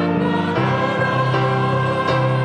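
Church choir singing a Korean choral anthem in sustained chords that change twice.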